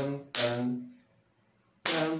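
A man's voice singing short syllables of a cartoon-style ending phrase: one note with a sharp start a third of a second in that dies away, a pause, then another note starting near the end.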